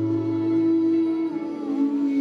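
Live band and singers holding a long sustained chord, one voice wavering with vibrato over it; the low bass note drops out about two-thirds of the way through.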